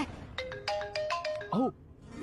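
Mobile phone ringtone: a quick melody of short electronic notes stepping between pitches, lasting about a second, then a brief voice sound near the end.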